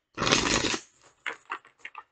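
Tarot deck being shuffled by hand: a long rustle of cards sliding together, then a few short card slaps.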